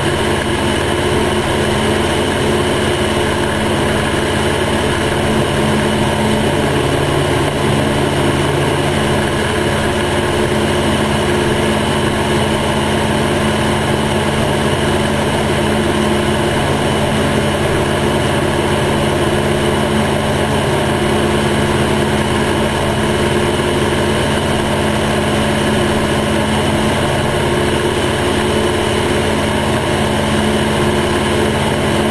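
Piper J3 Cub's engine and propeller running steadily in flight, a constant drone with no change in pitch, over a broad rush of air.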